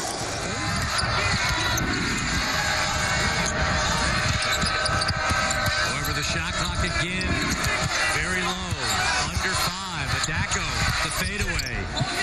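Live college basketball game sound in a full arena: the ball bouncing on the hardwood court under steady crowd noise and voices, with music underneath.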